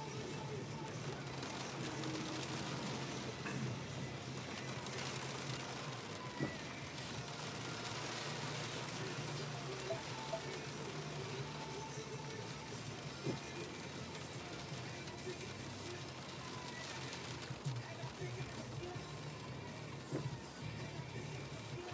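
Faint music playing in a car cabin over the steady low hum of the engine and the road noise of tyres on a wet street.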